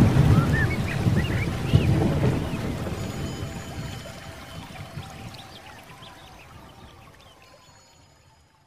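Closing sound bed of rain and rumbling thunder with short high chirps scattered through it, fading out steadily.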